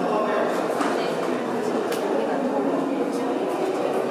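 Indistinct chatter of several people talking at once in a large hard-walled room, with a few faint clicks.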